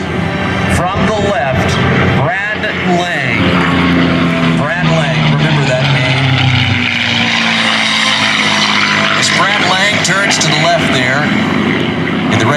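Red Tail P-51C Mustang's Merlin V-12 engine running at speed on a close pass. Its note falls in pitch between about three and seven seconds in as the plane goes by.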